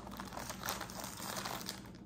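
Plastic bag of broccoli and cauliflower florets crinkling faintly as it is handled and pulled open.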